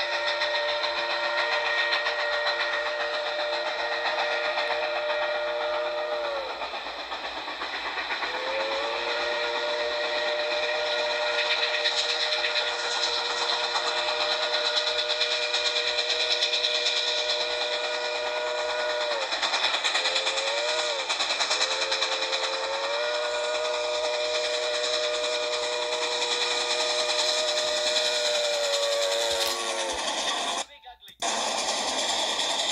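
Steam locomotive whistle of Grand Trunk Western 4-8-4 No. 6325 sounding the grade-crossing signal, long, long, short, long, several notes at once, over the steady noise of the approaching train. It is heard played back through a laptop speaker.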